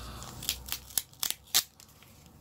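Clear plastic packaging crinkling and crackling as it is handled and pulled open, in a few short, sharp crackles about half a second apart, the loudest just past the middle.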